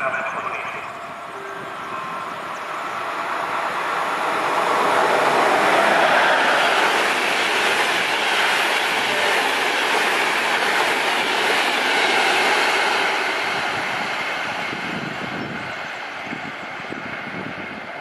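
A passenger train hauled by a ČD class 380 (Škoda 109E) electric locomotive runs through a station. The sound of the train on the rails builds as it approaches, stays loud as the coaches pass, then fades away near the end.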